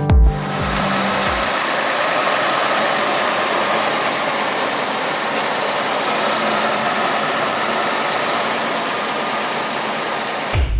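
Nissan NP300 pickup's engine idling: a steady, even noise with little bass, settling in about a second and a half in as music fades out.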